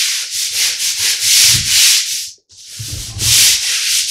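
Stiff-bristled scrub brush on a pole scrubbing a ceramic tile and grout floor in repeated back-and-forth strokes, pausing briefly about halfway through.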